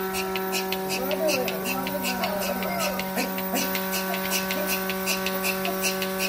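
Mini milking machine running during milking: a steady electric motor hum with a rapid, regular hissing tick about three times a second.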